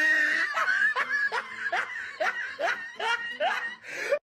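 A person laughing: a steady string of short laughs, each rising in pitch, about two or three a second.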